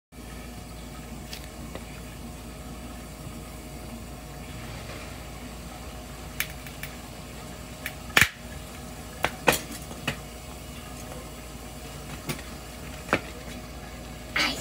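Sharp clicks and knocks on a hard kitchen floor, scattered from about six seconds in with the loudest just after eight seconds, over a steady low hum.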